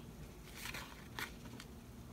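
Faint rustling of a metallic decorative trim ribbon and a cardstock panel being handled as the ribbon is wrapped around the panel, with a couple of brief soft rustles.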